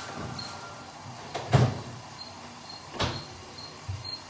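Two sharp knocks about a second and a half apart, the first the louder, over a faint steady background hiss.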